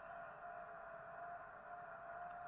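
Faint steady room noise with a thin, faint steady tone that fades in and out.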